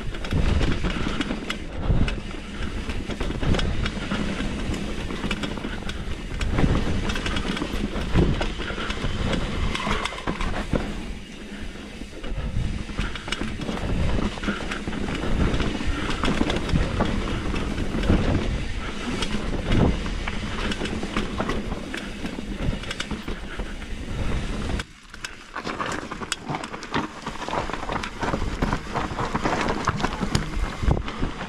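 Mountain bike descending a rough dirt and rock trail: steady rumble of knobby tyres on dirt, with frequent knocks and clatter as the bike rattles over roots and rocks. A brief smoother, quieter stretch comes about 25 seconds in.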